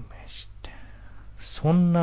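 A character's voice whispering in short breathy bursts, then a brief spoken syllable near the end, over a faint steady hum.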